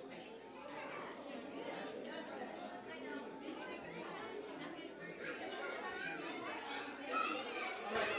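Indistinct chatter of a gathered congregation, adults and children talking over one another in a large hall, with no single voice standing out.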